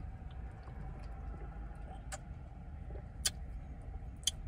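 Steady low hum of a car's cabin, with two short sharp clicks, the louder one about three seconds in.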